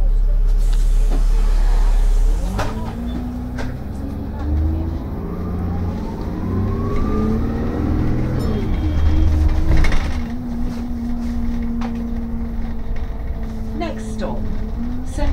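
City bus engine heard from inside the cabin: a steady low drone, then the engine note climbing in steps as the bus pulls away and gathers speed, falling again as it slows. A loud short noise comes about ten seconds in, after which the engine settles to a steady hum.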